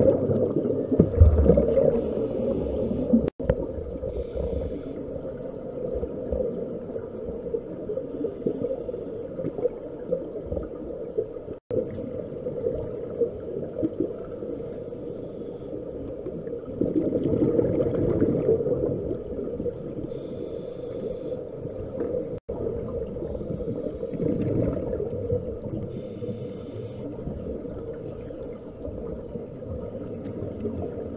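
Underwater sound of scuba breathing through a regulator: a short hiss on each inhalation every few seconds, and the gurgle of exhaled bubbles, loudest a little past halfway, over a steady underwater drone. The sound cuts out briefly three times.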